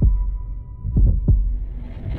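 Heartbeat sound effect: low double thumps, one pair at the start and another about a second in, with a faint steady high tone fading out beneath them.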